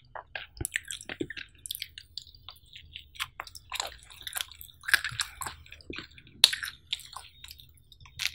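Close-miked chewing of cheesy pizza: irregular wet mouth clicks and small crackles of crust, with one louder click about three quarters of the way through.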